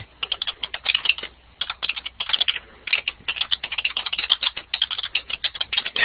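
Someone typing on a computer keyboard, picked up by an open microphone on a web-conference line: rapid, irregular keystrokes in short runs with brief pauses.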